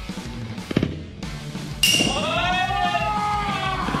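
A short knock a little under a second in, then a musical sound effect that starts suddenly about two seconds in, with several tones that rise and fall together.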